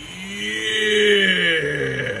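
A man's voice in one long drawn-out exclamation, its pitch rising a little and then falling away.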